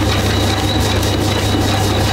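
Motorized dog treadmill running steadily at low speed: a constant low motor hum with a thin, steady high whine over it.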